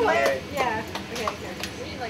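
Guests' voices near the start, then a few sharp clicks of a long-nosed utility lighter being clicked to light candles.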